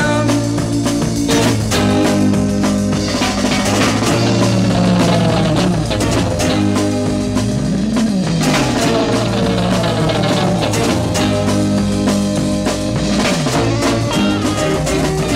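Instrumental break of a mid-1960s British beat-group record: electric guitar, bass and drum kit playing without vocals, with sliding notes about eight seconds in and again near the end.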